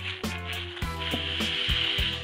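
A cloth rubbing across a flat steel plate, wiping off the mess left by hole-sawing: a swishing rub that starts about halfway through. Background music with a steady beat plays throughout.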